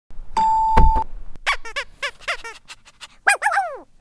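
An electric doorbell sounds a steady tone for about a second as its button is pressed, ending with a clunk. A dog then yaps in a quick run of short high barks, ending with a couple of falling whines.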